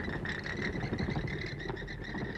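Horror sound-effect recording of a colony of bats in a belfry: a dense chatter of small squeaks and fluttering over a low rumble, with a steady high chirring throughout.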